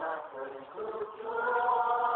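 A congregation singing a hymn together, voices in unison on long held notes, with a short break before a long sustained note in the second half.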